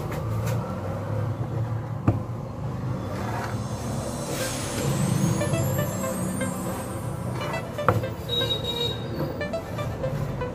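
A steady low rumble with music faint in the background, and two light knocks, about two seconds in and again near eight seconds, as fabric and a ruler are handled on a wooden table.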